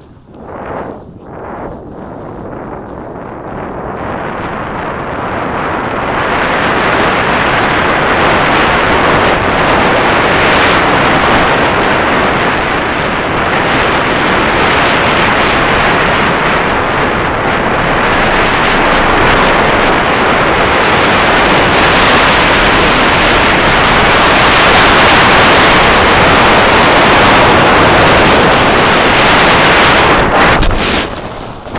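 Loud wind rushing over a phone's microphone as a skier skis downhill, building over the first few seconds as speed picks up and then holding steady.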